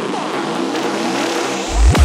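Electronic trance track at the end of a build-up: a dense swirl of sweeping synth effects over a rising noise, with a heavy kick drum and bass dropping in near the end.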